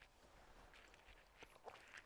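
Near silence: quiet outdoor room tone, with a few faint soft ticks near the end.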